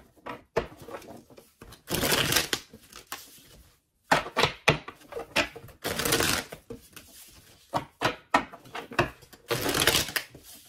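A deck of tarot cards being shuffled by hand: bursts of riffling and sliding with many small flicks and taps of cards, stopping briefly around four seconds in.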